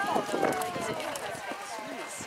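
A person's long, drawn-out call falling in pitch over about a second and a half, over the faint hoofbeats of a horse cantering on arena sand.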